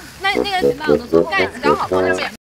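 People talking at close range, one voice after another; the speech is not in Portuguese and was not transcribed.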